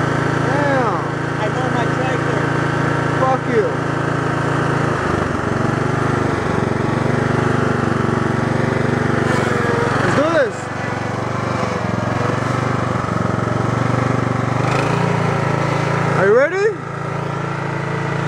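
Riding lawn mower's small engine running steadily close by, its hum shifting about five seconds in and again near fifteen seconds.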